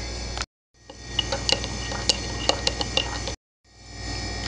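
Metal spoon stirring in a ceramic mug, clinking irregularly against the side. The sound drops out to silence briefly about half a second in and again near the end.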